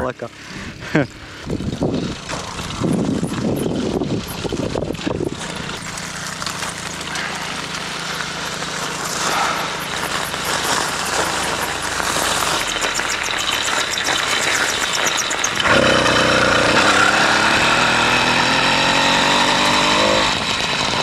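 A motor engine running steadily under riding noise from a gravel track, growing louder with a steady hum about three-quarters of the way through.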